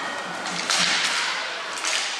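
Inline hockey play on a rink floor: a short swishing scrape about two-thirds of a second in and a sharper one near the end, from skates or sticks on the playing surface.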